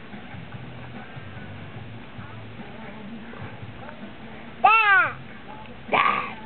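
Quiet background for several seconds, then near the end a toddler's single loud vocal cry, about half a second long, rising and then falling in pitch.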